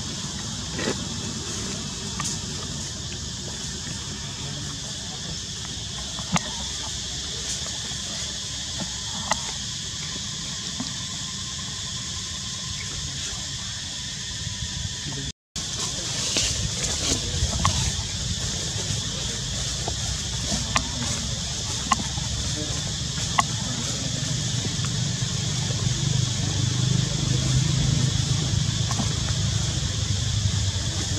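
Outdoor ambient noise: a steady hiss with a few short clicks and snaps scattered through it, and a low rumble that grows louder near the end. The sound cuts out briefly about halfway.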